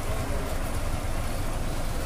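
Bus engine idling: a steady low rumble.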